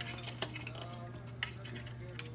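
Metal chain on a wooden bird bridge clinking faintly as a cockatoo tugs at it, with two sharper clinks about half a second and a second and a half in.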